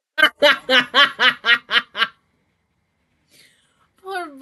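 A person laughing: about eight quick, even "ha" pulses over two seconds, then it stops.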